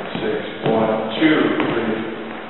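Speech: a man's voice, words indistinct.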